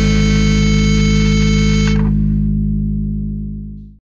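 The closing chord of a rock song, held on distorted electric guitar with bass underneath. The higher notes stop about halfway through, and the low notes ring on and fade away at the end.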